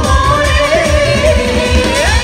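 Live Mappila song: voices singing through microphones over a hand drum keeping a steady beat of about four low strokes a second.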